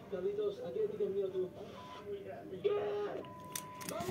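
Indistinct voices talking at low level, with a couple of sharp light clicks near the end.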